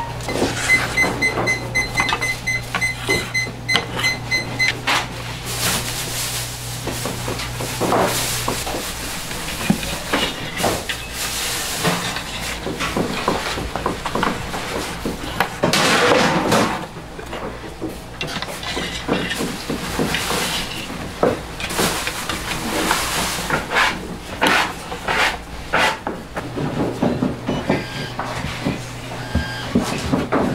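Kitchen work at a gas-fired clay bread oven: clanks, knocks and scrapes of a long metal peel against the oven floor as puffed balloon bread is lifted in and out, over a low steady hum. A quick run of high electronic beeps, about four a second, sounds for about four seconds near the start.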